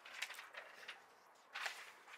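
Faint rustling of printed paper script pages being handled, with a sharper paper swish about one and a half seconds in.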